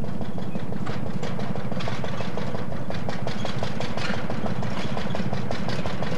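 Model grist mill's machinery running steadily, a low hum with a rapid, even ticking of several ticks a second.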